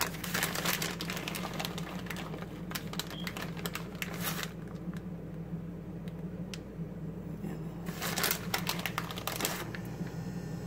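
Plastic bag of shredded mozzarella crinkling and rustling as a hand reaches in and sprinkles cheese, in two bursts: the first four seconds or so and again near the end, over a steady low hum.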